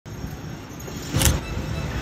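Street traffic noise with a low rumble, and a short sharp noise just past the middle that is the loudest moment.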